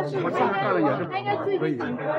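A crowd of people chatting at once, many overlapping voices blending into a steady, indistinct hubbub with no single voice standing out.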